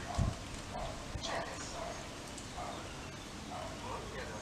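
A low thump just after the start, then a few light clicks of metal grill tongs handling meat over a plate and bowl.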